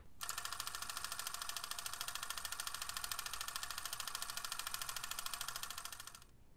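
A small machine clattering rapidly and evenly, about a dozen ticks a second at a steady level, cutting off near the end.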